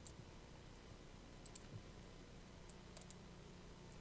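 Near silence broken by a few faint computer mouse clicks: a pair about a second and a half in and three quick ones near three seconds.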